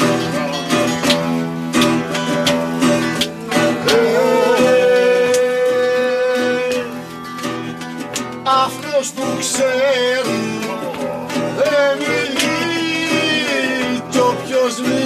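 Acoustic guitar, round-backed lute and hand drum playing together, with a man singing. The voice holds one long note about four seconds in, then sings wavering, ornamented lines later on.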